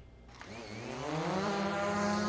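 Small quadcopter drone's motors spinning up at lift-off from dirt ground: a buzzing whine that starts about half a second in and rises in pitch as it grows louder.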